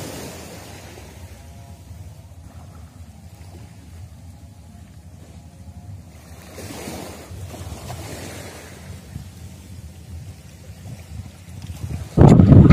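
Wind rumbling on the microphone, with broad swells of rushing noise at the start and again about seven seconds in.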